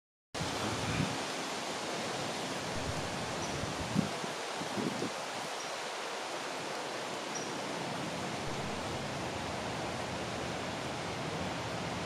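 Steady, even background hiss with no clear source, with a few soft bumps about one, four and five seconds in.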